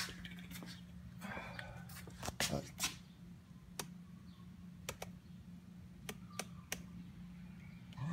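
Plastic clicks of the car's light switch stalk being turned through its positions to work the headlights and fog lights, single clicks spread out with a quick run of them near the middle, over a steady low hum.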